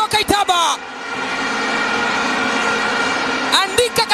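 Stadium crowd cheering after a goal as a steady wash of noise. An excited voice is heard at the start and comes back near the end.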